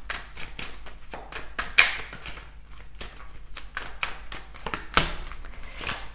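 A deck of tarot cards being shuffled by hand: a run of quick, light card clicks, with a sharper snap about two seconds in and another about five seconds in.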